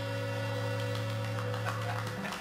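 Amplified electric guitar and bass holding a low note and chord that rings on steadily through the amps, the sustained tail after the band stops playing.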